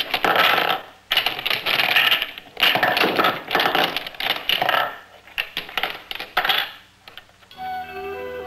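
Small metal cubes, balls and cylinders of a magnetic construction set clinking and clicking against one another and the magnetic plate as they are pushed and rearranged by hand, in rapid irregular clusters that stop shortly before the end.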